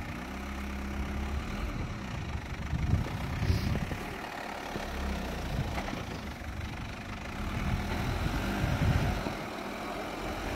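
Mitsubishi Shogun's engine running at low revs as the 4x4 crawls through deep snow, the engine noise swelling twice for a second or two as the throttle is opened.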